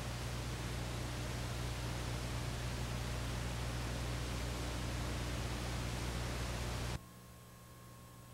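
Steady static hiss with a low electrical hum, switching on abruptly and cutting off about seven seconds in.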